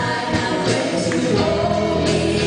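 Live contemporary worship song: singers at microphones backed by a band with drums and guitar, the congregation singing along as a group.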